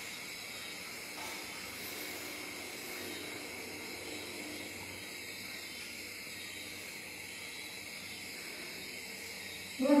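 Steady background hiss at an even level, with faint indistinct low sounds in the middle.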